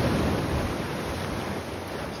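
Black Sea surf washing on the shore, a steady rush of noise, with wind on the microphone.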